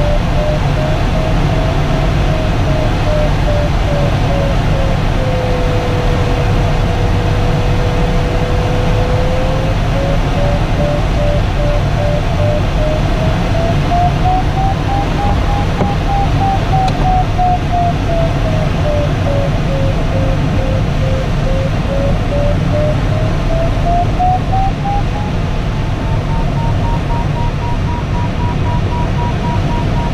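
Glider's audio variometer beeping, its pitch rising and falling with the climb rate as the glider circles in a thermal, over the steady rush of air around the cockpit. About five seconds in, the beeps give way for a few seconds to a steady lower tone, the variometer's sign of weaker lift or sink. Near the end the beeps hold at their highest pitch.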